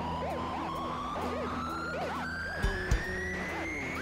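Live rock band music: a long tone rising steadily in pitch like a siren, over held low notes and quick up-and-down chirping notes, with two loud low thumps about three seconds in.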